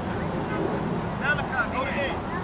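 Outdoor crowd sound at a youth football game: distant high-pitched voices call out briefly about a second in, over a steady low rumble.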